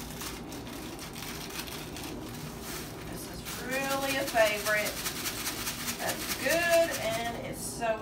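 Faint rapid rattling and rustling as poppy seeds are shaken from a container into a bowl of crushed crackers. A person's voice sounds twice in the second half without clear words, and it is the loudest thing heard.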